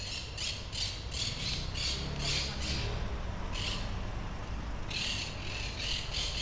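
Harsh bird squawks in quick runs of about three a second, with a pause in the middle and a single call during it, over a steady low engine rumble.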